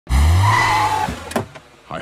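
A car pulling up fast and skidding to a stop: an engine rumble with a high tyre screech that fades out after about a second. A short sharp click follows.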